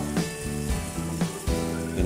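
Background music with held notes, over carrots and garlic sizzling in hot oil in a frying pan as they are stirred with a spatula.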